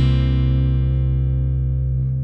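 A worship band's closing chord on acoustic guitar with a held bass note underneath, struck right at the start and left ringing as it slowly fades away.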